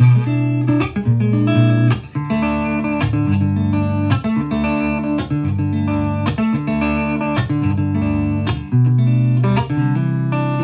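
Squier Classic Vibe 50s Stratocaster electric guitar played on its neck pickup, one of its vintage-style custom-wound single-coil pickups: a continuous run of picked notes and chord fragments, about two new notes a second.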